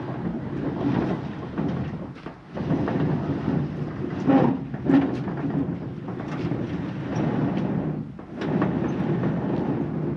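A large, long-unused sliding barn door being pushed open along its track in three heaves, rumbling and grinding as it moves, with a couple of loud knocks about halfway. The door has not been opened in ten or fifteen years.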